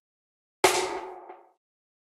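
A single hip hop snare drum sample, played back once: a sharp crack with a ringing tail that dies away within about a second, its reverb being shortened.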